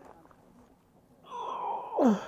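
A man's strained vocal groan, held briefly and then falling in pitch near the end: the effort of heaving a heavy scooter up onto its centre stand.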